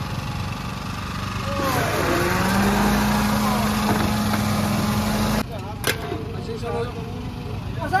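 Electric countertop blender motor running with a steady hum, coming in about two seconds in and cutting off abruptly about five seconds in. Voices and street noise are heard around it.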